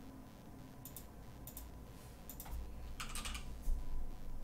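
Quiet typing on a computer keyboard: a few separate keystrokes, then a quick run of several about three seconds in.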